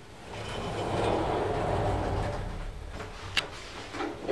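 Machine-room-less traction lift car running in its shaft: a rumble with a low hum that builds over the first second, holds steady, then eases off, with one sharp click a little before the end.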